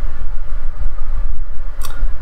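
Steady low rumble of a car's cabin, with one brief click near the end.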